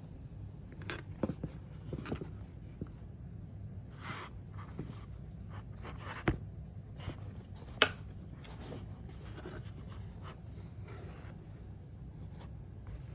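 Handling noise from a canvas-and-suede high-top sneaker being turned in the hands over a cardboard shoebox: irregular soft rustling and scraping with scattered taps, the two sharpest a little after six and near eight seconds in.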